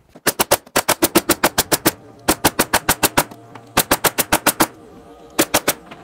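Pneumatic stapler fastening a plywood sheet down, firing in five quick runs of rapid sharp shots, about eight or nine a second.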